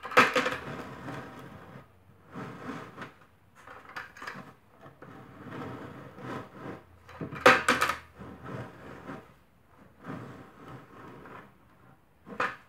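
White 5-gallon plastic bucket being turned by hand in short stages on a concrete step, its rim scraping and knocking against the concrete in irregular bursts every second or two. The sharpest knocks come just after the start and about seven and a half seconds in.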